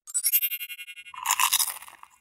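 Short channel-logo sting: a glitchy electronic sound effect with high, buzzing tones for about a second, then a louder crisp crunching burst.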